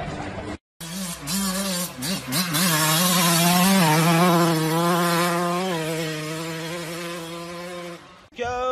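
Dirt bike engine revving, its pitch wavering as the throttle is worked, then held at a steady high rev and fading as the bike rides away.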